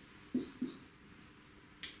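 Whiteboard marker tapping against the board twice, about a quarter second apart, as the two short strokes of an arrowhead are drawn, each tap followed by a faint squeak of the felt tip.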